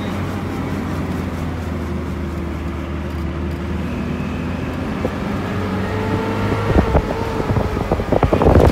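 Car engine and road noise heard from inside the cabin while driving: a steady low hum, with the engine note rising slowly in the second half. A few short knocks come about seven seconds in.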